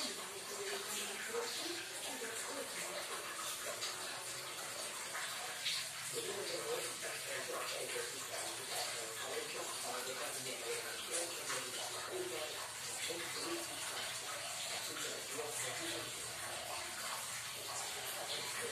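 Hands squeezing and rubbing crumbly, damp dough of glutinous rice flour and grated coconut, making an irregular soft scratchy rustle as portions are pressed into balls.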